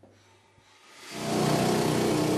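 Rock drill on a column mount, air-driven through a hose, starting up about a second in and then running loud and steady with a rapid hammering.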